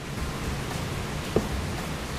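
Steady hiss of heavy rain, with a brief squeak about two-thirds of the way in.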